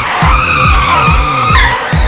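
Tyre squeal from a pickup truck skidding, a high screech held for about a second and a half that then shifts pitch, over electronic dance music with a steady kick drum.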